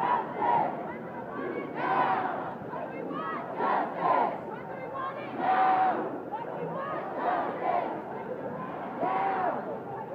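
Large crowd of protest marchers shouting together, many voices overlapping, swelling louder every second or two.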